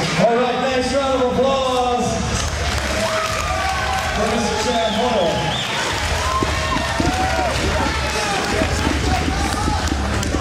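Arena crowd noise: indistinct voices calling out over a steady murmur, with a low hum that comes and goes.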